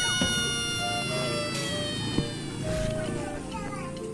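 Background music with an added sound effect: a long high tone that slides slowly downward and fades over about three seconds.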